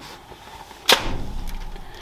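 A single sharp slap of stiff stencil card about a second in, as the laser-cut waste sheet is pulled off the laser cutter's honeycomb bed, followed by a few faint light ticks of card being handled.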